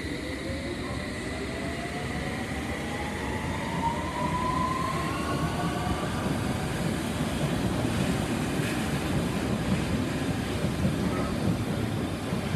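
London Underground S7 Stock train pulling out of the platform: its traction motors give a whine that rises in pitch as it accelerates, over the rumble of wheels on the rails, which grows louder about four seconds in.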